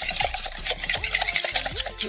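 A metal scraper blade scraping a slab of hardened crayon wax off a metal tray, a rapid, gritty rasp as the wax peels up in curls.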